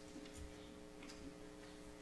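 Quiet room tone: a faint steady hum with a few soft, irregular clicks.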